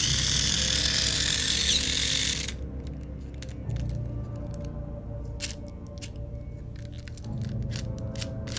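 Tamiya Falcon Junior's small battery-powered electric motor and gear train running with the wheels spinning free in the hand: a loud whirring gear noise for about two and a half seconds that cuts off suddenly, then a quieter low hum with scattered clicks. The front drive gear is no longer fixed to its axle, so only the rear wheels are driven.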